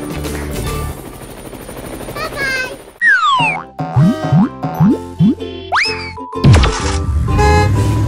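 Cartoon sound effects over children's background music. About three seconds in comes a quick falling slide-whistle, then a run of short springy boings and a rising whistle as animated toy-car wheels bounce into place.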